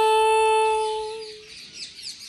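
A singer holding one long, steady note at the end of a line of a Tamil devotional verse, fading out about a second and a half in. Faint high chirps like birdsong follow near the end.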